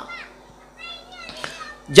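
Faint children's voices during a lull, with one short high-pitched call about a second in. A man's amplified voice starts just at the end.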